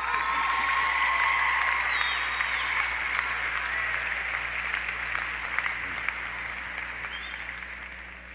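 Large arena crowd of graduates and guests applauding, the clapping gradually dying away over the seconds.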